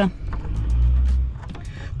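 A low rumble that swells about half a second in and eases off near the end, with a few faint clicks.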